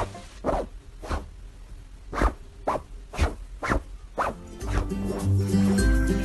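A series of short swishing sounds, about two a second and paced like footsteps, with background music coming back near the end.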